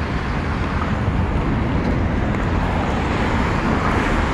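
Steady road traffic: cars and vans passing on a wide multi-lane road close by, an even rush of tyres and engines with no single vehicle standing out.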